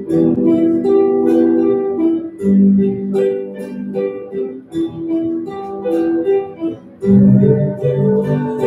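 Live music from a small ensemble, with plucked guitar carrying chords through an instrumental passage of a song; notes sound and change steadily, with a fuller chord about a second before the end.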